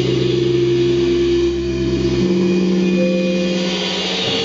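Sustained drone from the electric guitars and electronics: several steady held tones at once. The lowest tone cuts off about two and a quarter seconds in, leaving the higher tones ringing.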